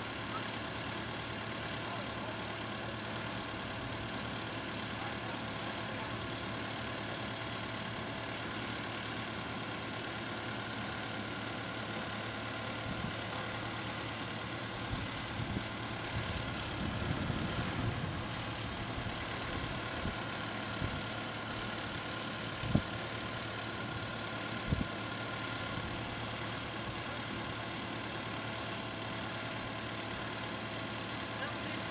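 SkyTrak telehandler's diesel engine idling steadily, with a few scattered knocks in the middle and two sharp knocks about three-quarters of the way through.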